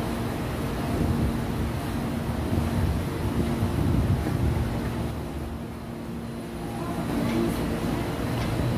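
Steady low rumble of outdoor market and street noise with a steady hum through it, dipping a little about six seconds in.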